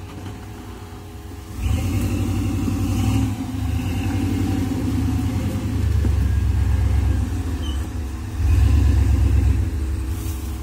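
Chevy S10 rock crawler's engine revving in pulls under load as it crawls up a rocky ledge. It gets much louder about a second and a half in, with the strongest pull near the end.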